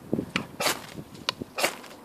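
Ferrocerium fire steel scraped along the spine of a TOPS BOB Fieldcraft knife: about five short, quick rasping strokes, the strikes that throw sparks onto the tinder.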